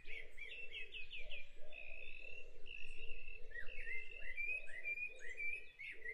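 Dawn chorus field recording: several birds singing at once, with quick repeated chirps and short warbled phrases overlapping and a lower repeated sound underneath.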